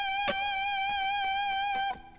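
Electric guitar holding a single note, the G at the 15th fret of the high E string, with a little vibrato, muted just before the end.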